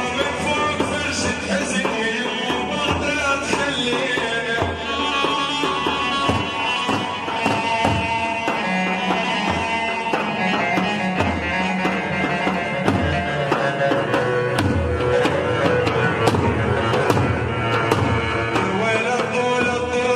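Iraqi chobi dance music: large double-headed tabl drums beating under a melody played on a keyboard.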